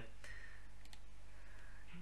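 Two or three light clicks of a computer mouse about a second in, over a steady low electrical hum.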